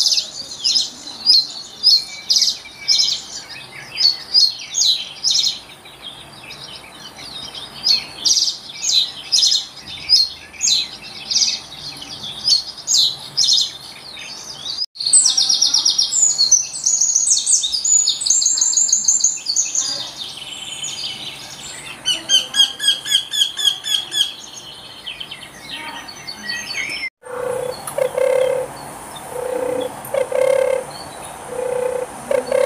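Three birds sing in turn. First a reed bunting repeats short, high chirping phrases. About fifteen seconds in, a Eurasian wren's loud, fast song with rapid trills takes over, and near the end a European turtle dove gives low, repeated purring notes.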